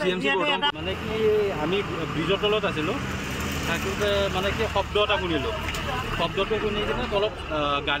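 Men talking, with a motor vehicle's engine running close by: a steady low hum comes in just under a second in and runs on under the voices.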